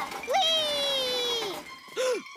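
A young cartoon pup's high voice giving a long, gleeful 'wheee', rising quickly and then sliding slowly down in pitch for about a second.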